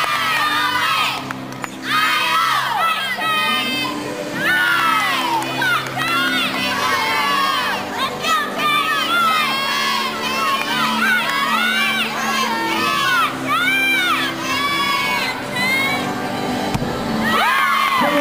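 Gymnastics meet crowd and teammates shouting and cheering, many high voices yelling in quick overlapping calls throughout the routine.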